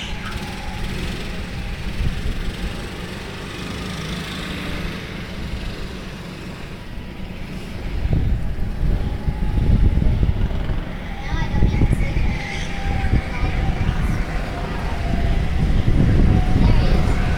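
Go-kart engines whining as the karts lap the track, with a faint rising note as one accelerates about two-thirds of the way through. A heavy, uneven low rumble builds from about halfway through.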